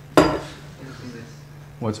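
A single sharp clatter about a quarter second in, ringing off briefly, over a steady low hum.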